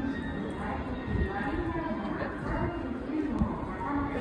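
Spoken announcement over a railway station platform's public-address speakers, a voice going on through the whole stretch.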